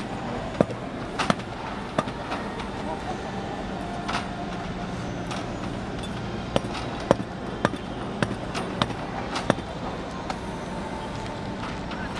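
Sharp cracks and knocks at irregular intervals from baseball practice, balls being hit and caught. Under them run distant voices and a steady stadium hum.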